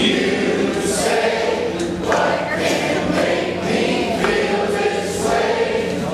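A group of voices singing together, a congregation or choir singing a song.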